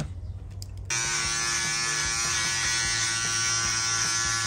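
Electric shaver buzzing steadily while shaving a man's face, starting abruptly about a second in.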